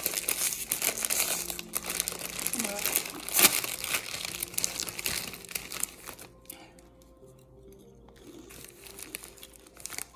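Crinkly plastic snack bag rustling and crackling as it is handled close to the microphone, with a sharp louder crackle about three and a half seconds in; the rustling dies down after about six seconds.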